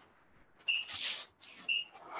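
Quick, hard breaths out in time with fast resistance-band rows, about one a second, each with a short high squeak.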